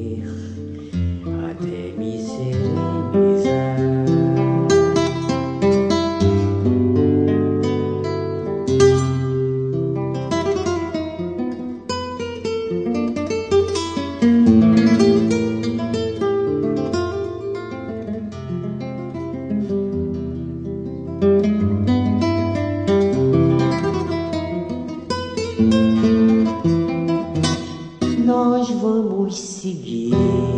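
Nylon-string acoustic guitar played live, with quick picked runs and chords over ringing bass notes.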